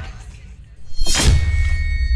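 Cinematic logo sting: after a brief lull, a deep impact hit with a whoosh lands about a second in, followed by a high ringing shimmer that holds on.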